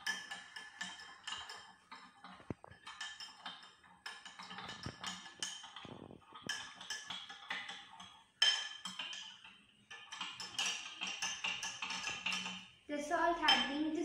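A spoon stirring salt into a glass tumbler of water, clinking against the glass again and again as the salt dissolves.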